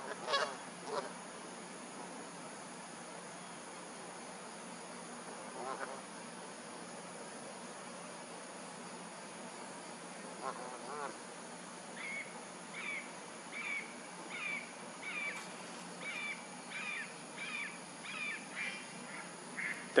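Red-shouldered hawk calling: a run of about a dozen short, evenly spaced screams, a little under a second apart, through the second half, with a few scattered calls before it.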